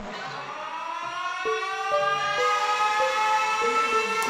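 A siren-like tone rising slowly in pitch, played through the party's sound system between songs, with a few short stepped notes coming in from about a second and a half in.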